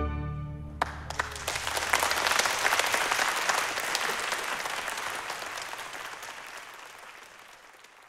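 The orchestra's final chord of the symphony's finale rings out and dies away, then audience applause starts about a second in, swells, and fades out near the end.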